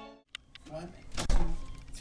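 Orchestral music cuts off abruptly at the start, then men talking in the studio control room.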